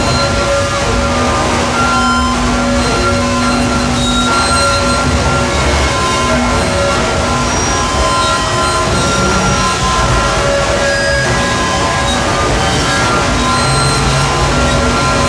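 Dense power-electronics noise music: several steady held drone tones layered over a thick, unbroken wash of noise, at a constant high level with no beat.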